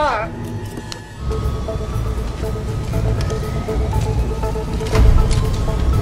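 A man's pained scream, falling in pitch, breaks off just after the start. Then a film soundtrack mix: a steady low rumble under music with a repeating short pulsing tone, scattered clicks, and a heavy thump about five seconds in.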